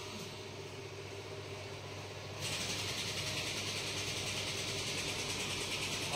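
Steady low mechanical hum of running machinery in a car repair shop. About two and a half seconds in, a louder steady hiss comes in abruptly and stays.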